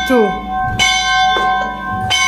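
A bell struck at an even pace, about once every 1.3 seconds, each strike ringing on with several clear tones. A small child's short call comes at the start.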